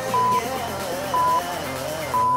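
Workout interval timer counting down with short, single-pitch high beeps, one per second, two in this stretch, each louder than the backing pop music with sung vocals underneath.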